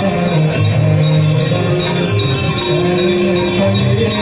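Many aarti hand bells ringing continuously in a fast jangle over loud devotional music and singing.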